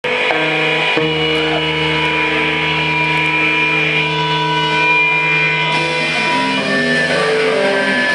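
Live band with distorted electric guitar at high volume: a chord is struck and left ringing with steady sustained tones for several seconds, then the guitar moves through shorter changing notes near the end.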